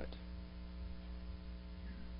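Steady electrical mains hum, several steady tones over a faint hiss, picked up through the microphone and sound system.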